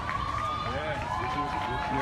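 Indistinct voices of people talking, with a steady thin tone held through the first half.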